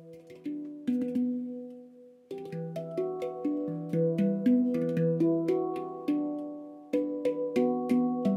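Symphonic Steel handpan played with the fingers: a few ringing notes, then from about two seconds in a quicker run of struck notes, several a second, that ring on and overlap.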